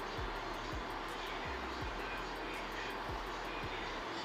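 Steady, even background noise, like a machine or fan running, with no distinct events.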